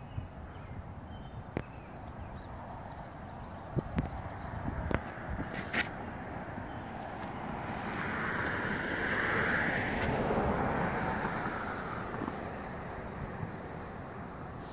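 A car passing on a nearby road: a tyre hiss that swells to its loudest about two-thirds of the way through and then fades, over steady outdoor background noise with a few faint clicks.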